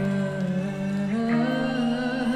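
Live rock band playing a quiet, sustained passage: held bass and electric-guitar notes with a voice singing long notes, the chord moving to new pitches about a second in.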